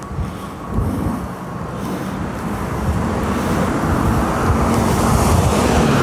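Low rumble of road traffic picked up on a phone microphone, slowly growing louder.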